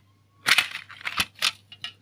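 Plastic CD jewel case being snapped open: a quick series of sharp plastic clicks and cracks, the loudest about half a second in.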